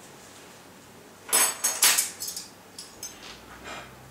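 Metal knife and fork clinking and scraping on a dinner plate while cutting a slice of baked ham. A cluster of sharp clinks comes a little over a second in, then fainter taps.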